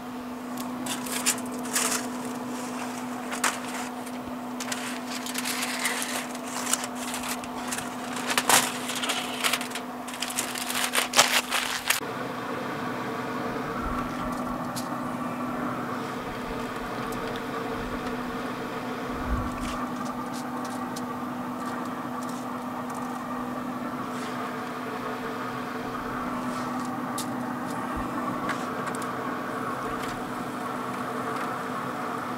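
Metal tongs clattering and aluminium foil crinkling as smoked ribs are lifted out of a foil pan, over the steady hum of a Traeger pellet grill's fan. About twelve seconds in, the clatter stops and the hum continues with only a few light taps.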